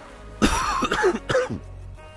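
A man coughs and clears his throat: a sudden rough burst about half a second in, then about a second of throaty, gravelly sound.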